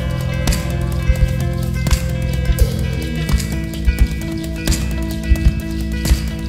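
Live band playing an instrumental passage: electric guitar and keyboard hold chords that change about halfway through, over sharp, irregular hand-played percussion hits.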